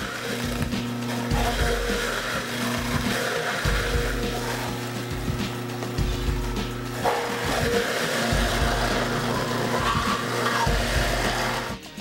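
Electric juicer motor running with a steady hum as vegetables and fruit are pushed through its feed chute, over background music.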